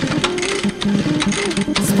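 Electronic club dance music playing loud through the club's sound system: a steady, fast-ticking beat under a stepping melodic line.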